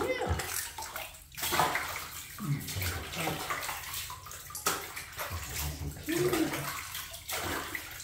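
Shallow bathwater sloshing and splashing in a bathtub as a wet cloth scrubs a hairless cat standing in it, with splashy surges every second or few.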